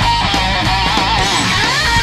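Distorted electric guitar lead, played through a Digitech RP350 multi-effects unit, with bent, wavering notes and then a slide up in pitch near the end. It plays over a rock backing track of drums and bass.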